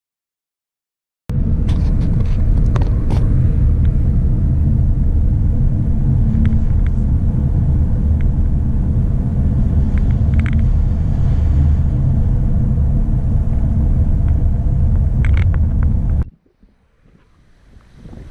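A car driving along a road, heard from inside the cabin: a loud, steady low rumble of engine and road noise with a few faint clicks. It starts about a second in and cuts off suddenly near the end.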